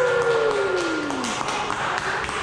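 A single long pitched note that slides slowly downward and ends about a second and a half in, over steady background noise with a few light taps.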